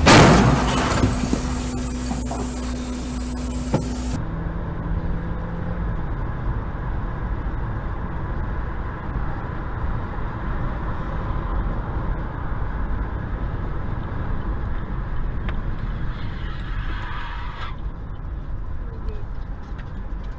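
A loud bang right at the start with a burst of noise, then the steady low rumble of road and engine noise heard from inside a car driving along a highway.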